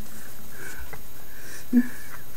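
A man sniffing and breathing close to the microphone, with a brief low sound near the end.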